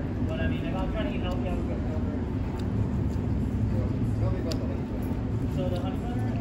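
Outdoor background noise: a steady low rumble with indistinct voices coming and going, and a few faint clicks.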